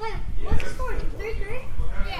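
Children's voices calling out during a game, with a sharp knock about half a second in and a steady low rumble underneath.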